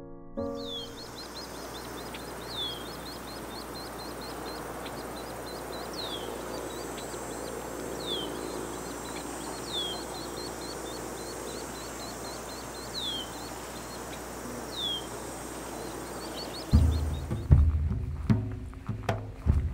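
Wild birds calling over steady outdoor ambience: a quick run of short high chirps, with a louder high note that slides downward every couple of seconds. Near the end, music with heavy low drum-like beats comes in and drowns it out.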